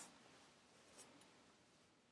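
Near silence: room tone, with a faint light tick about a second in as hands handle yarn on a small wooden loom.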